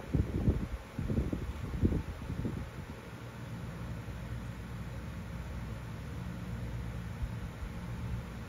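Steady low hum and hiss of background noise, with soft low thumps in the first couple of seconds.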